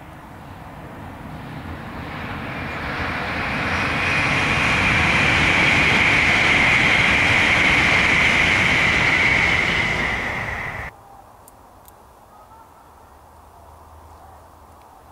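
LNER Class 801 Azuma electric train passing: a rushing noise that builds over about four seconds, holds loud, then cuts off suddenly about eleven seconds in, leaving only quiet open-air background.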